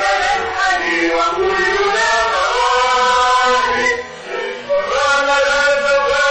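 Vocal trio singing a Moroccan song in long held notes that bend slowly in pitch, with a short break about four seconds in.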